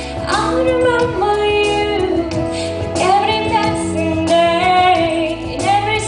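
Woman singing into a microphone over instrumental accompaniment with long sustained chords.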